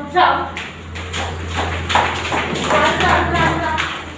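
Many young children's voices together in a classroom, over a steady low hum.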